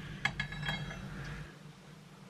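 A few light metallic clicks in the first half second, followed by a brief high ringing: small metal parts being handled.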